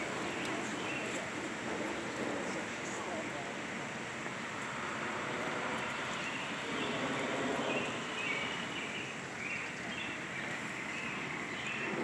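Steady outdoor background noise, with short high chirps now and then.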